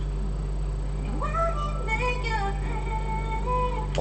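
A woman's solo voice singing a phrase of held notes that glide up and down, starting about a second in, over a steady low hum.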